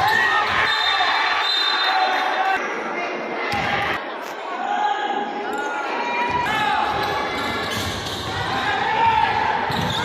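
Basketball game in play: a ball bouncing on the court and sneakers squeaking in short chirps, with players' and spectators' voices echoing around a large gym.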